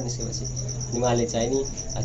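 Steady high-pitched insect chirping, pulsing rapidly without a break, over a low steady hum; a man's voice speaks briefly about a second in.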